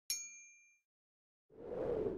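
Notification-bell sound effect: a bright, bell-like ding that rings out and fades within under a second as the bell icon is clicked. About a second and a half in, a short rush of noise swells up and falls away.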